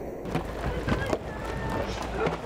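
Steady low rumble of several longboards' urethane wheels rolling on asphalt as their riders are towed uphill behind a truck, with scattered faint voices of the group.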